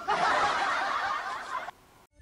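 Recorded crowd laughter, a burst of many people laughing at once that starts suddenly and cuts off abruptly near the end. It is a laugh track punctuating a joke.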